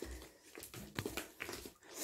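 A small pet animal making a faint call, with two light taps of sandals on stone steps about a second in.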